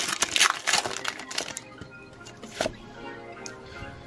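Foil Pokémon Hidden Fates booster pack wrapper crinkling and crackling as it is torn open, a quick run of crackles in the first second and a half that then dies down to lighter handling. Faint background music runs underneath.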